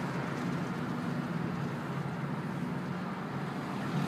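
Steady engine and tyre noise of a car driving along a road, heard from inside the cabin.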